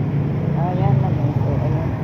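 Cars driving slowly past close by on a city street: a steady low engine and tyre rumble. A voice is heard briefly about half a second in.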